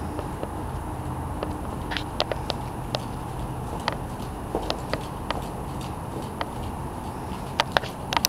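Ridden horse moving over arena footing: irregular sharp clicks and knocks, bunched closer together near the end, over a steady low rumble.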